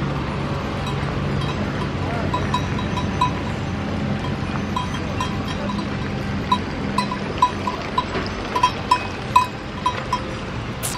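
Bells on grazing goats clinking irregularly, sparse at first and then more frequent and louder in the second half, over a steady low background noise.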